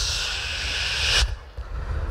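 Beatboxer making a steady breathy hiss into a microphone for just over a second, cutting off sharply, then a quieter low rumble.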